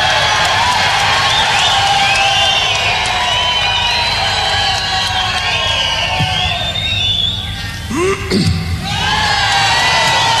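Live concert audience cheering, with many high voices screaming and calling over one another. About eight seconds in, a lower voice briefly calls out above the crowd.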